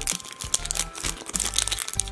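Foil Pokémon booster pack wrapper crinkling and crackling in the hands as it is torn open.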